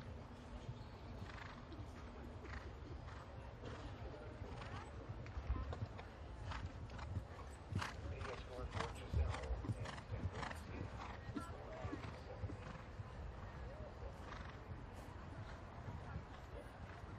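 Horse cantering on grass, its hoofbeats coming as a run of short regular thuds that grow louder in the middle.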